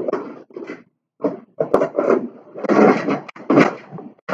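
Fingers rummaging through a clear plastic compartment box of small electronic parts: a run of uneven scraping and rattling with a few sharp clicks.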